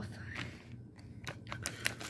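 A few light clicks and crinkles, closer together near the end, as a small clear plastic zip bag is handled over a plate of dried edible insects.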